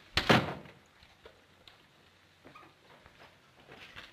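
A front door being shut, closing with one solid thud about a quarter second in. A few faint clicks and knocks follow.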